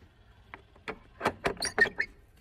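A series of sharp knocks and taps against wooden boards, coming quicker in the second half, with a short squeak near the end.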